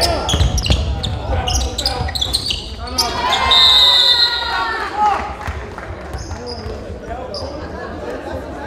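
Basketball game sound in a gym: a basketball bouncing on the hardwood court among players' shouts, then a short, high referee's whistle about three and a half seconds in, followed by lower crowd and player voices.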